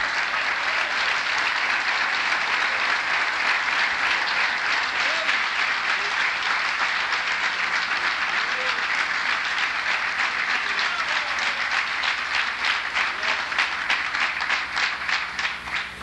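A congregation applauding with sustained clapping from many hands. In the last few seconds it thins into more distinct, separate claps and eases off.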